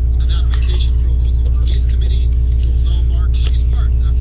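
A loud, steady low hum with many evenly spaced overtones, with faint speech underneath it.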